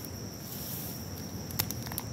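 Crickets chirring in a steady high trill, with faint scrabbling and a few sharp clicks near the end as a hand digs into a crab burrow under a rock.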